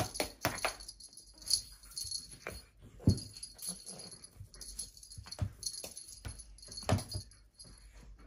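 A cat wand toy being flicked about while a kitten bats at it: irregular rattles, light jingling and knocks, the loudest knock about three seconds in.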